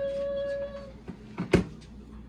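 A cat's long meow that rises, then holds and ends about a second in, followed by a single sharp knock about a second and a half in.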